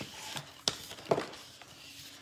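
Heat transfer vinyl being handled and pulled off its carrier sheet during weeding: faint rustling with a few light, sharp ticks.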